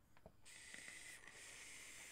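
Faint steady hiss starting about half a second in: a hard cloud-chasing vape hit on a Reload 26 rebuildable tank atomizer, air rushing through its wide-open airflow over a very low-resistance (0.11 ohm) coil build.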